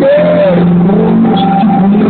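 Loud live band music over an outdoor PA, heard from within the crowd: guitars and bass holding steady notes, with a note that rises and falls in the first half-second.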